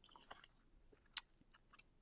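Foam adhesive squares being peeled off their paper backing sheet and handled, giving faint crinkling and small clicks, with one sharper click about a second in.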